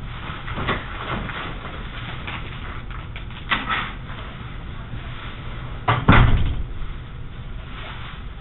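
Knocks over steady room noise: a short knock about three and a half seconds in, then a heavier double thump about six seconds in.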